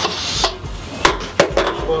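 Stainless pressure cooker's lid and valve knob being worked by hand: a few sharp metal clicks and knocks. The expected hiss of steam from the valve does not come.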